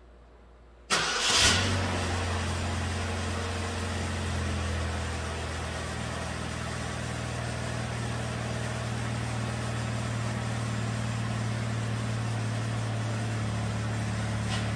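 2009 Chevrolet Malibu Hybrid's 2.4-litre four-cylinder engine starting about a second in, with a short burst as it catches, then running at a steady idle.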